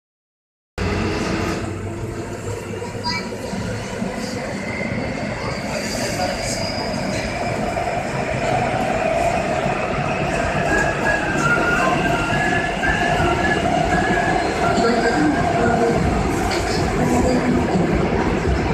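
Interior of a Seoul subway car running through a tunnel: steady rumble of wheels and running gear, growing gradually louder, with thin high wheel-squeal tones coming and going.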